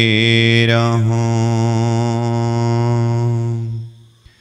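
A man's voice chanting a devotional verse, holding one long low note with a slight waver, which fades out near the end.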